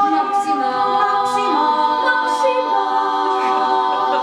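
Ensemble of seven young women singing a cappella in several-part harmony, holding chords that shift to new notes a few times, with the hiss of sung consonants now and then.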